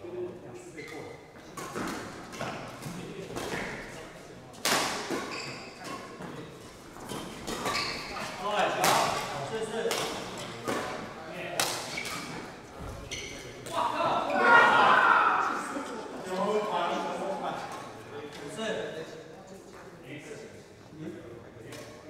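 Badminton racket strings hitting a shuttlecock in a doubles rally: several sharp cracks a second or two apart, ringing in a large hall, with people talking around the courts.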